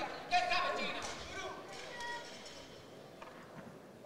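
Voices shouting in a large arena hall, loudest in the first second and a half, then dying away to quiet hall ambience with a few faint knocks near the end.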